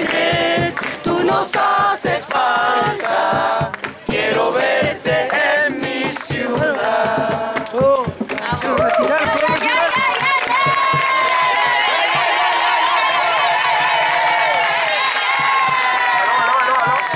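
A group of voices singing together without instruments; in the second half many voices hold long, wavering notes at once.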